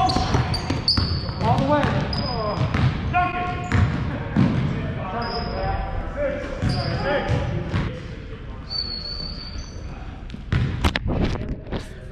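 Pickup basketball on a hardwood gym floor: a basketball bouncing with dull thuds and sneakers giving several short, high squeaks as players cut and stop, all echoing in the gym. Loud knocks near the end as the camera is handled.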